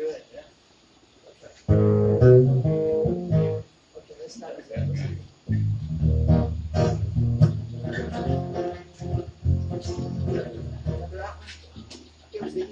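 Acoustic guitars strummed and picked in loose, stop-start bursts rather than a steady song, with low bass notes underneath; one low note rings on near the end.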